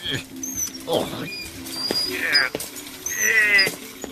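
Cartoon character's wordless vocal noises: short grunts and squeaky sounds with wobbling, sliding pitch, over light background music.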